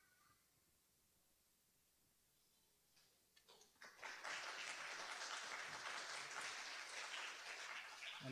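Small audience applauding: a few scattered claps about three seconds in, building to steady clapping from about four seconds.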